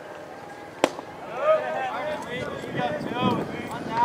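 A single sharp pop about a second in, a pitched baseball smacking into the catcher's mitt, followed by players' voices calling out in the background.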